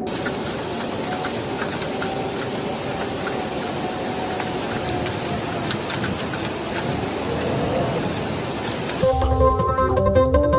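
A steady rush of fast-flowing floodwater. About nine seconds in it cuts off sharply and electronic music begins.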